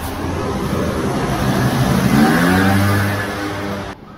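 A motor vehicle's engine building in loudness as it passes close, its pitch rising as it accelerates about two seconds in, then cut off abruptly at the end.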